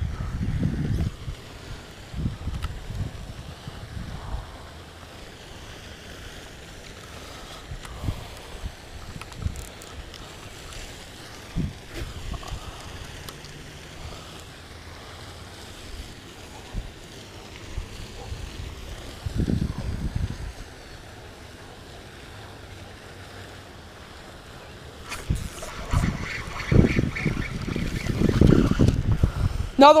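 Wind buffeting the microphone in uneven gusts, a low rumble that swells and fades, growing louder and busier in the last few seconds.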